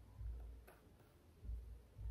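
Faint handling sounds from a hair straightener being worked through hair: a light click about two-thirds of a second in and a few soft low bumps.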